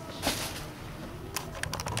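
Handling noise on the camera: a short rustle about a quarter second in, then a quick run of sharp clicks near the end.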